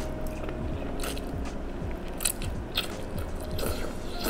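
A person slurping thin rice noodles out of tom yum soup in several short, sharp slurps, with chewing in between.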